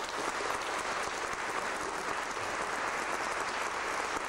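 Audience applauding steadily at the end of a live vocal performance with a Schrammel ensemble.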